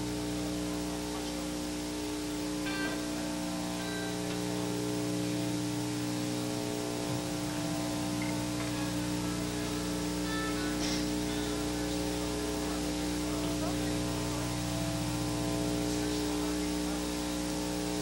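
Steady electrical hum from the idling band equipment, several fixed low tones that do not change, under a constant hiss. Nobody is playing.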